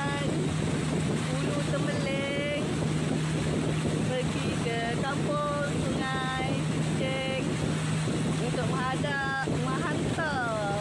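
A river boat's motor running with a steady low hum under a constant rush of wind and water. A woman's voice speaks in short bursts over it.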